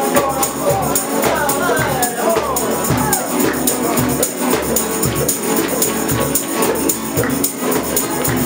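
Several acoustic guitars strummed together in a fast, even rhythm, with a man singing over them in Spanish; his voice glides through a few long bending notes in the first half.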